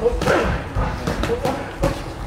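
Boxing gloves landing punches during sparring: several sharp thuds in quick succession, the loudest near the end.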